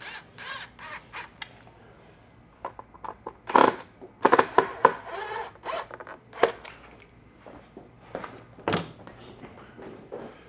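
Cordless electric screwdriver tightening the screws of a speaker and speaker adapter, running in short bursts with clicks between them.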